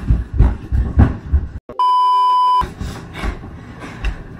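A censor bleep: a steady, single-pitch beep of just under a second about halfway through, after the sound cuts out abruptly. Irregular thumps and rustling from a scuffle on a couch come before and after it.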